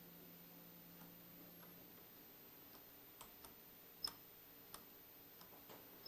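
Near silence with a faint steady hum, and from about three seconds in a handful of faint, scattered clicks, the loudest about four seconds in.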